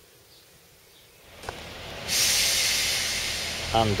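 Faint outdoor ambience that gives way, about two seconds in, to a loud steady hiss with a low hum underneath, as a Class 142 Pacer diesel railbus approaches along the platform.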